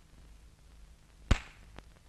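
A single sharp, loud crack about a second and a half in, ringing out briefly, over the steady low hum and hiss of an old film soundtrack.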